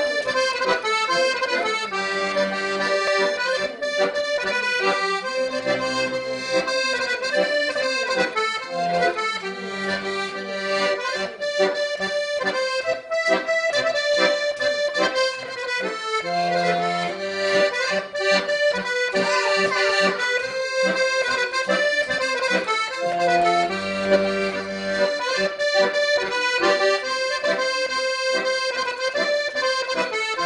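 Small piano accordion playing a Circassian (Adyghe) folk tune, a melody over low bass notes.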